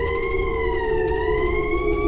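Eerie film-soundtrack sound design: a siren-like wail that slowly rises and falls over a steady low drone.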